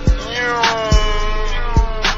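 Slowed-down hip-hop track between lyrics: three heavy, deep kick drum hits under one long pitched note that swells, then slides slowly downward.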